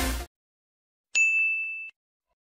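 Electronic dance music stops abruptly just after the start. After a short silence, a single bright bell-like ding sound effect sounds about a second in, rings on and fades, and is cut off suddenly near the end.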